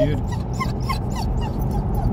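A dog whining in the car, a quick series of short high whimpers about three or four a second, over the steady rumble of road and engine noise inside the moving car's cabin.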